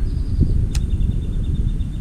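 Wind buffeting the camera microphone, a fluttering low rumble, with one sharp click about three-quarters of a second in.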